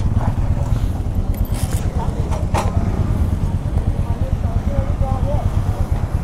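Royal Enfield motorcycle engine idling with a steady low pulsing, with faint voices over it and a couple of sharp clicks about two seconds in.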